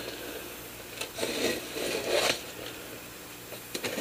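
Cardboard mailer package being handled and turned over on a hard surface: soft scraping and rubbing, louder about a second in and again around two seconds.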